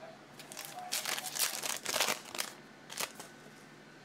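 Glossy Optic basketball trading cards being handled and flipped through by hand: a run of soft crinkling and sliding rustles for a couple of seconds, then one more brief rustle near the end.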